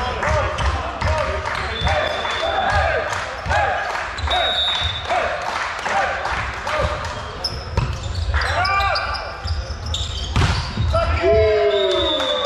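Volleyball rally in a sports hall: sneakers squeak on the wooden court, the ball is struck with sharp slaps and players call out. Near the end, players shout louder as the rally finishes.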